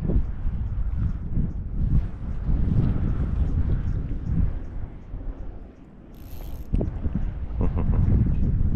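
Wind buffeting the microphone, with the faint ticking of a fishing reel being wound in on a hooked fish. The wind drops briefly about three-quarters of the way through.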